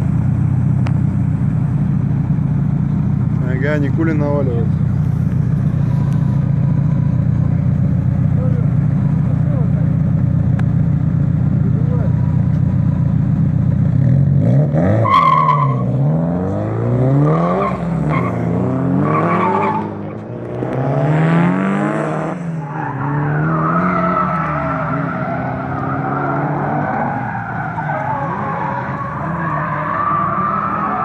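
Drift cars' engines: a close engine idling with a steady low rumble for the first half, then, from about halfway, engines revving up and down again and again with some tyre squeal as cars drift.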